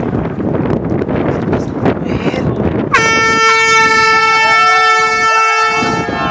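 Shouting voices over a noisy background, then about halfway through a single steady air horn blast that holds one pitch for about three seconds.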